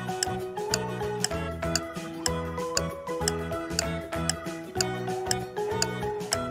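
Countdown-timer music: a light pitched melody over a clock-like ticking beat, about two ticks a second, marking the time left to answer.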